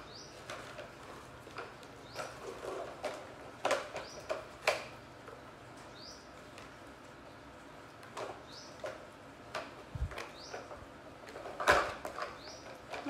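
A plastic toy dump truck knocking and clattering on a tile floor as it is handled and tipped, in irregular clicks and taps with the loudest cluster near the end. Faint short high chirps recur in the background.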